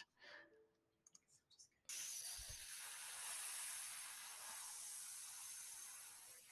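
Near silence with a few faint clicks, then a faint steady hiss of microphone or room noise that switches on about two seconds in.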